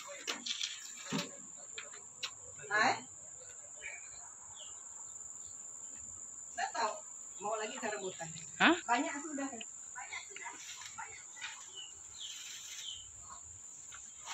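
A steady high-pitched insect chorus drones without a break, with snatches of people talking in the background, loudest a little past the middle.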